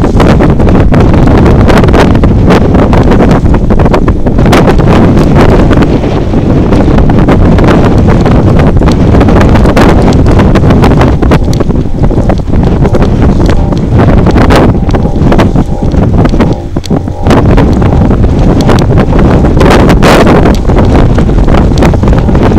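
Wind buffeting the camera's microphone: a loud, gusty rumble with crackling, easing briefly about sixteen seconds in.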